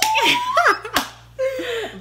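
Women bursting into loud laughter, opening with a high, rising shriek, and a single sharp slap about a second in.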